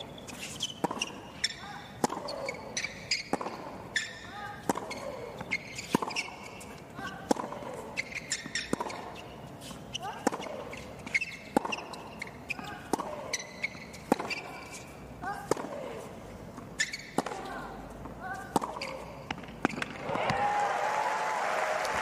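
Tennis ball struck back and forth by rackets in a long baseline rally on a hard court, each hit a sharp pop with the bounces in between. About two seconds before the end the rally stops and crowd applause and cheering swell up.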